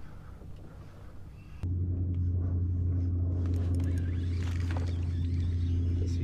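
Small gas outboard motor on a fishing kayak idling with a steady low hum, which starts abruptly about a second and a half in over a quieter, even background. A few light clicks come through over the hum.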